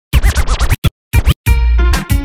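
Turntable scratching: a record sample cut into quick back-and-forth strokes with sliding pitch, broken by short silences. About one and a half seconds in, a sustained track with deep bass drops in.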